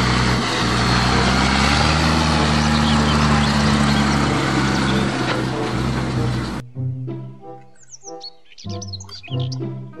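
Tractor pulling a Case IH LB434R large square baler, engine and baler running with a steady drone and dense noise, the pitch rising slightly about two seconds in. About six and a half seconds in it cuts off suddenly, and background music with chirping bird sounds takes over.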